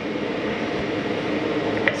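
A steady, even rushing noise like air moving through a fan or vent, with a single click near the end.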